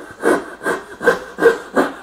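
Coping saw with a fine 15-teeth-per-inch blade cutting by hand into a wooden board: about five quick, even strokes, two or three a second, cutting on the pull stroke. It cuts easy.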